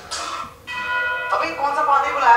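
Bell-like tone ringing steadily in a horror sketch's soundtrack, starting about half a second in after a brief rushing hiss.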